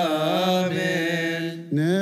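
Coptic liturgical chant: a man's voice singing a drawn-out, ornamented melody. It breaks off briefly for breath about one and a half seconds in, then takes up a new held note.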